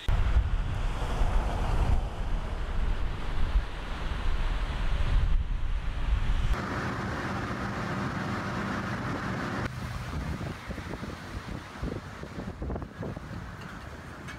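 Strong wind buffeting the microphone with a deep, loud rumble, giving way about six and a half seconds in to a hissing rush of wind. From about ten seconds in it is quieter, with scattered small knocks.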